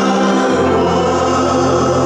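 Gospel singing with organ accompaniment, voices and organ holding sustained chords; about half a second in the chord changes and the bass moves to a lower note.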